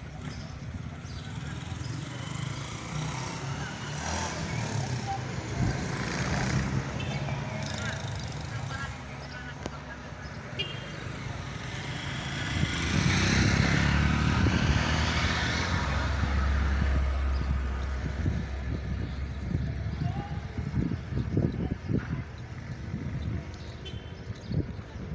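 Outdoor street ambience with people talking in the background, and a motor vehicle passing about halfway through, its deep rumble swelling and then fading.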